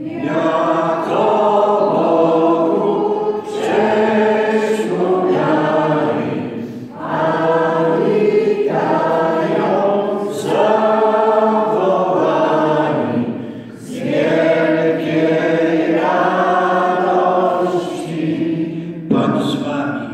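A small group of people, mostly women, singing together unaccompanied, in long phrases broken by short pauses for breath every three to four seconds.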